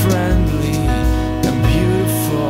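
Jazz band playing an instrumental passage: held and sliding melodic lines over double bass and drums, with cymbal strokes.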